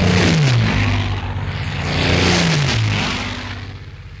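Propeller aircraft engines passing low overhead, a loud roar that swells and fades, with the engine note falling twice as they go by.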